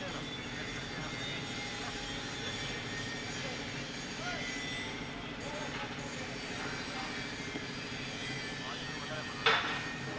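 A cricket bat strikes the ball once, a single sharp knock about half a second before the end, over a steady outdoor hum and faint distant voices.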